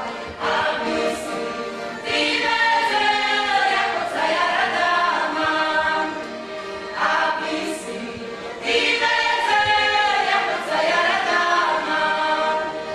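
A folk ensemble's voices singing a folk song together in chorus, in full phrases with short breaks between them.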